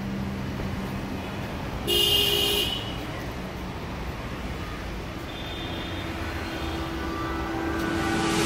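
Steady city street traffic noise, with a vehicle horn honking once briefly about two seconds in.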